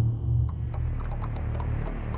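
A low, steady droning hum from horror-film sound design. Faint scattered ticks start just under a second in.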